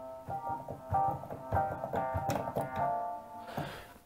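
Piano-like software instrument played from a MIDI keyboard controller and heard through a laptop's built-in speakers: several notes and chords over about three seconds, dying away near the end.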